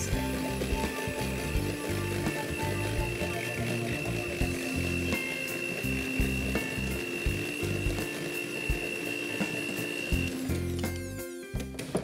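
Handheld electric mixer running, its beaters turning through cupcake batter in a stainless steel bowl, with a steady motor whine that stops about ten seconds in. Background music with a bass line plays underneath.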